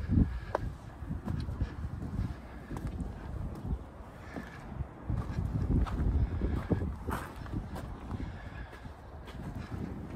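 Footsteps crunching on a gravel path, with wind buffeting the microphone in low, uneven gusts.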